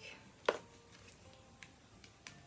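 A single sharp click about half a second in as a phone charger and its cable are handled, followed by faint small handling sounds.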